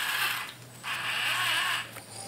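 A 1/10-scale RC crawler's Holmes Hobbies Crawlmaster brushed motor and geared drivetrain running with the wheels spinning free on the bench, in two short runs. The first dies away about half a second in, and the second starts just under a second in and lasts about a second, as the truck is driven forward and back.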